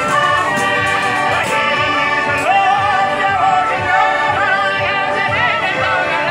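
Southern Italian folk music played live: a zampogna bagpipe and reed pipe sound over an accordion and a jingling frame drum. A man's voice sings a wavering melody over the steady held notes from about halfway in.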